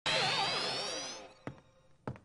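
Cartoon electric guitar strummed once, a loud chord with a rising high squeal that rings out and fades over about a second; a short click follows.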